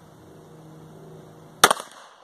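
A single shot from a Defenzia M09 less-lethal pistol about one and a half seconds in, sharp and loud, with a short ring-out. A faint steady hum runs underneath before it.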